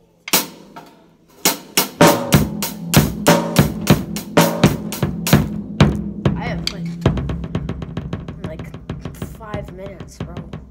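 Acoustic drum kit played with wooden sticks: a single hit, then a loud pattern of snare, tom and bass drum strikes, then a faster, softer roll that fades away near the end.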